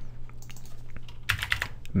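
Typing on a computer keyboard: a quick run of a few keystrokes about a second and a half in, over a faint steady low hum.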